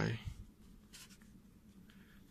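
Faint scratching of a pencil tip on paper as handwritten notes are written.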